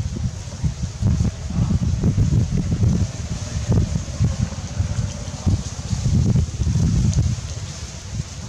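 Wind buffeting the microphone: an irregular low rumble in gusts.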